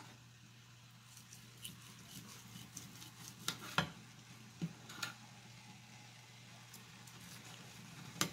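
Kitchen knife slicing tender cooked corned beef on a ceramic plate: faint cutting sounds with a few sharp clicks as the blade meets the plate, the loudest a little before four seconds in. A low steady hum runs underneath.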